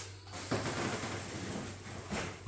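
Plastic shopping bags crinkling and rustling as groceries are pulled out by hand, starting about half a second in.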